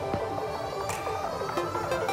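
Background music with a steady run of melodic notes, occasional sharp beats and a tone slowly rising in pitch.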